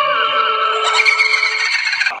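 Eerie horror-style sound effect: sustained, wavering electronic tones that slide slowly downward in pitch, with higher, brighter tones joining about a second in.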